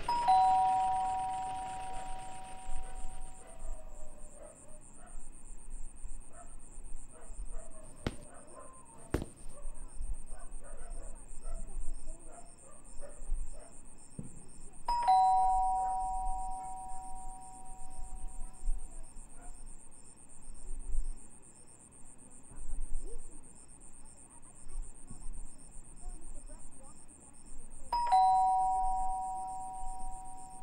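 Electronic two-tone doorbell chime, a higher note falling to a lower one that rings on, heard three times: at the start, about fifteen seconds in, and again near the end.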